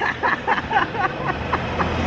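A woman and a toddler laughing, in quick repeated bursts, over the steady hum of a busy shopping mall.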